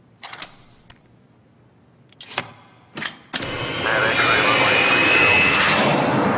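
A few sharp clicks as a small model car is twisted in the hands. About three seconds in, a sudden loud rushing sound cuts in and holds steady.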